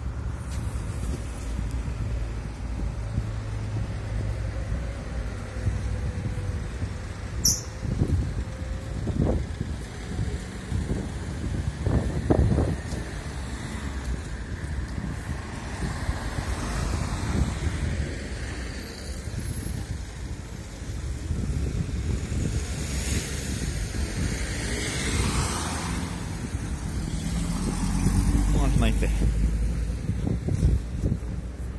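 Town street traffic: cars driving past, with a steady low rumble underneath and a car passing close near the end.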